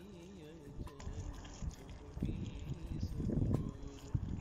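Water pouring in a steady stream into a metal kazan of fried meat and vegetables, splashing and growing louder and fuller toward the end. Soft background music plays during the first second.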